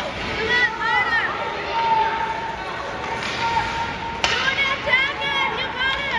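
Ice rink din during a youth hockey game: short, high-pitched shouts and calls from voices, with sharp clacks of sticks or the puck on the ice about four and five seconds in.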